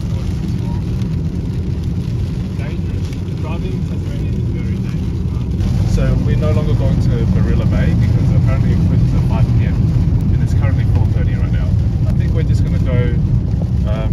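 Steady low road and tyre rumble inside the cabin of a car driving on a wet road in the rain. It gets louder about six seconds in.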